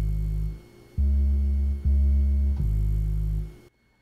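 Electronic bass line for a hip-hop beat, played from a mini keyboard controller: a low note ending about half a second in, then three long, deep notes in a row, the middle two loudest, stopping just before the end.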